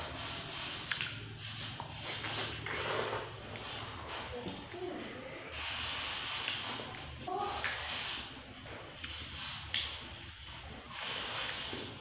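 Soft chewing and slurping of firm, chewy watermelon-flavoured Nutrijel jelly, with a few short mouth clicks, over a low steady hum.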